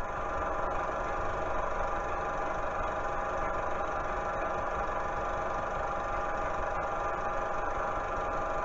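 A steady, unchanging hum made of several held tones, with no speech.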